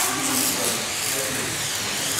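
Cloth rubbing over a car roof's painted metal while cleaning it with glass cleaner, a steady scrubbing sound.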